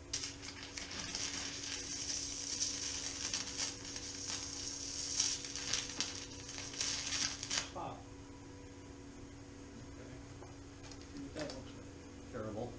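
TIG welding arc on aluminum, a crackling hiss for about seven and a half seconds that then stops abruptly.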